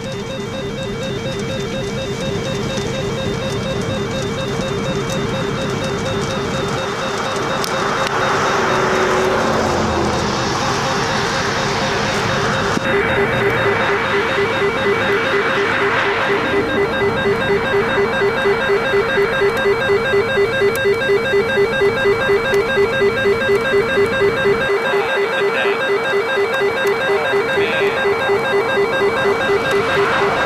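A weather radio's alert alarm sounding continuously as a rapidly warbling electronic tone, pulsing about two to three times a second and growing louder about halfway through. The alarm signals that a tornado warning has been issued. Wind or road noise runs underneath during the first half.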